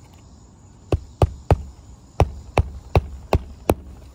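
Hammer striking under a lifted asphalt shingle tab: eight sharp blows starting about a second in, three quick ones, a short pause, then five at an even pace about a third of a second apart.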